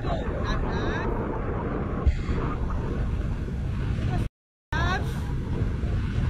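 Wind rushing over a helmet- or bar-mounted action camera's microphone during a parasail flight: a loud, uneven low rumble, with a brief cut to silence about four seconds in.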